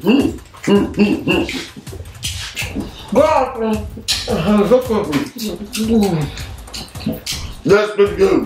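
Adult voices humming "mm" and "mm-hmm" with their mouths full of fried plantain, over short wet clicks and smacks of chewing.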